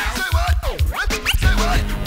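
Early-'90s hip hop instrumental break: a DJ scratching a record on a turntable, quick rising and falling sweeps over a drum beat with a heavy kick.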